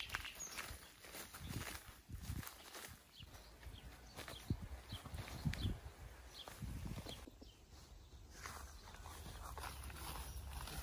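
Footsteps through tall grass and undergrowth, an irregular run of soft thuds with stems and leaves brushing.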